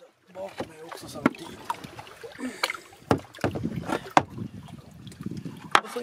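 A kayak and its paddle knocking and scraping against shore rocks, with water sloshing around the hull; a series of sharp, irregular knocks, the loudest about a second in, then around three, four and near six seconds.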